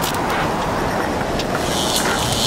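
Intro sound effect: a steady rushing rumble with a few sharp crackles scattered through it.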